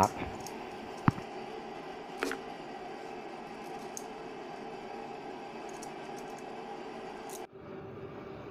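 Sparse clicks and light taps from hands working on a pump motor held in a bench vise, with one sharp click about a second in, over steady workshop background noise that changes abruptly near the end.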